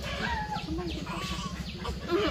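Chickens clucking in short, separate calls, over a steady low hum.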